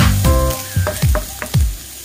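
Chopped onion sizzling as it fries in a nonstick wok, stirred with a wooden spoon, under background music with a beat that thins out in the second half.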